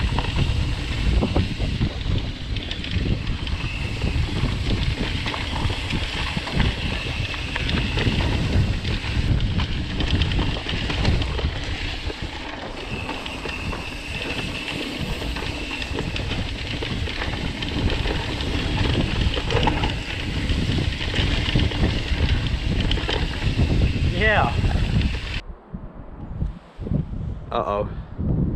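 Ride noise from an e-mountain bike descending dirt singletrack at speed: wind buffeting the handlebar camera's microphone, with tyres rolling and the bike rattling over rough ground. It stops abruptly near the end.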